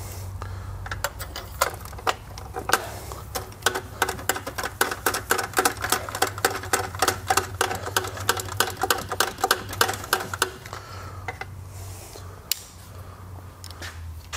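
Socket ratchet clicking in quick runs as a spark plug is unscrewed and backed out, the clicking stopping about ten seconds in. A steady low hum runs underneath.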